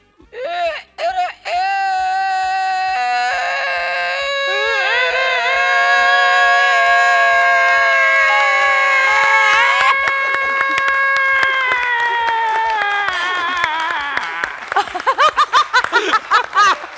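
A woman's voice holding one very long, high crowing note in imitation of a Denizli rooster's famously drawn-out crow, lasting about twelve seconds with a few shifts in pitch. Clapping and cheering break in near the end.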